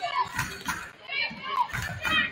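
Basketball game sound in a gym: players' and spectators' voices, with short sneaker squeaks on the hardwood court and a few sharp knocks of the ball.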